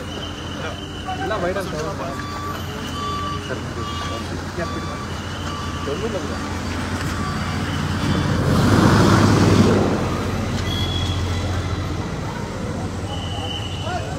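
Diesel road machinery, including a Wirtgen cold milling machine, running with a steady low hum amid traffic, with repeated short electronic warning beeps at two different pitches. A loud rushing noise swells about eight and a half seconds in and dies down after about a second and a half.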